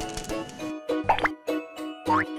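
Cartoon background music with a repeating note pattern, and about a second in a short cartoon sound effect that sweeps quickly up in pitch.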